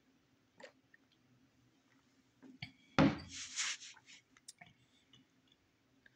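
A person taking a sip of beer from a glass: a short slurp about three seconds in, then small mouth and lip clicks, over a faint steady hum.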